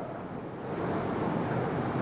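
Steady hiss of background room noise picked up by the microphone during a pause in speech, growing slightly louder about half a second in.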